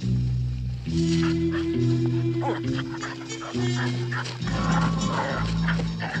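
Background music score with steady held low notes, and over it a German Shepherd dog making short vocal sounds from about a second in.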